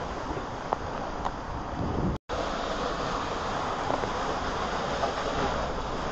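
Steady rushing of water and air on the microphone as a tube raft slides down an enclosed water slide. The sound cuts out completely for an instant about two seconds in.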